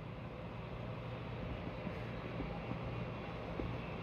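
Steady low hum with an even hiss of moving air, from a hotel room's wall-mounted air-conditioning unit running.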